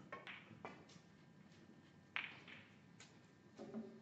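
Hushed room with a few sharp clicks and knocks, the loudest about two seconds in and ringing briefly, and a short low voice near the end.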